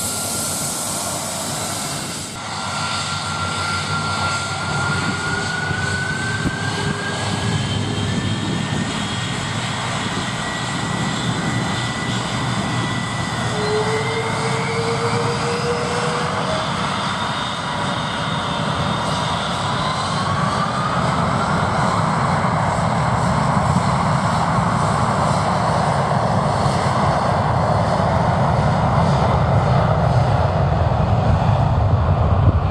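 Boeing 747-400 freighter's four jet engines at takeoff thrust during the takeoff roll: a steady rumble with whines that slowly rise in pitch, growing louder toward the end.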